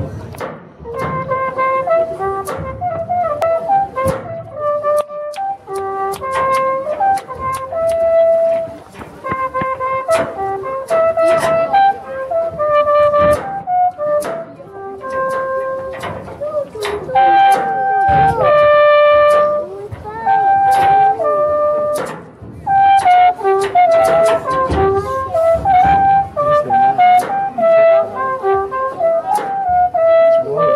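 A Büchel, the trumpet-shaped Swiss wooden alphorn, played solo: a lively melody of short, separate notes, with a few longer held notes around the middle.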